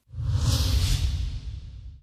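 Euronews logo ident: a whoosh sound effect with a deep rumble underneath, swelling in just after the start and fading away toward the end.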